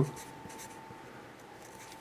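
Felt-tip marker writing on paper: faint rubbing of the tip as a word is written out in short strokes.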